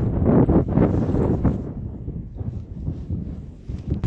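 Wind buffeting the microphone, over the running of a red regional train passing on the track just below.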